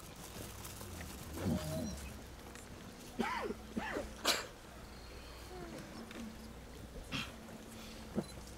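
Hushed crowd with a low steady background hum, broken by a few brief whining cries that slide up and down in pitch, and a short sharp sound about four seconds in.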